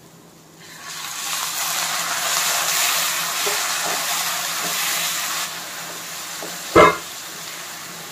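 Food sizzling in a hot pan: a loud hissing sizzle starts about a second in, eases to a quieter sizzle after about five seconds, and is broken near the end by a single sharp clank.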